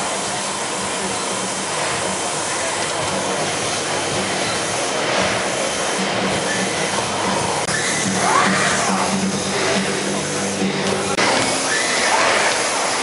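Steady background noise of a busy exhibition hall, with indistinct voices of the crowd now and then.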